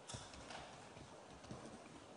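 Near silence: room tone with a few faint, short knocks.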